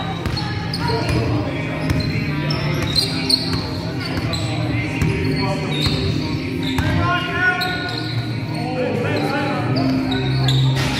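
A basketball bouncing on a wooden sports-hall floor in repeated sharp knocks, with players' voices calling out across the echoing hall over a steady low hum.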